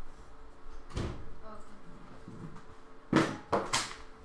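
Household handling noises: a dull thump about a second in, then two short, loud knocks close together near the end.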